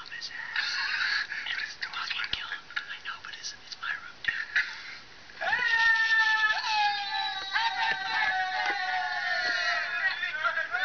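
Audio of a vlog played through laptop speakers: faint hushed voices, then about halfway in a held, slowly falling pitched sound with several overtones that continues.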